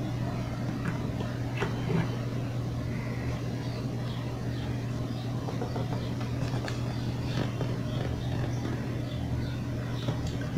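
Steady low electrical or fan hum of room background, with a few faint, sparse clicks.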